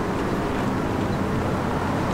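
Steady city street noise, traffic and wind, heard through a Rode VideoMicro on-camera shotgun mic with a furry 'dead cat' windscreen that keeps the wind from buffeting the microphone.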